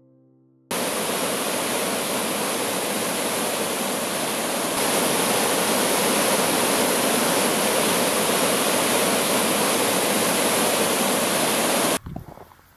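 A small waterfall: a stream cascading over layered rock ledges, a steady rushing of water. It cuts in sharply just under a second in and gets louder about five seconds in.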